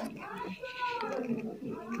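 A faint, drawn-out call in the background, its pitch rising and then falling over about a second.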